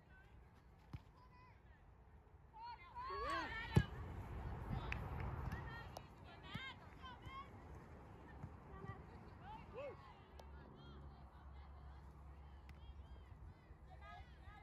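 Soccer players and sideline spectators calling and shouting across the field, faint and distant, with a louder burst of shouting about three to four seconds in. A single sharp knock at the height of that burst.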